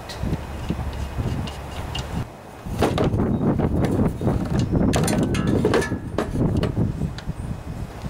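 A small lawn-mower engine being handled and set down onto an aluminium mower deck: a run of metal clunks, knocks and scraping over a low rumble, busiest from about three seconds in.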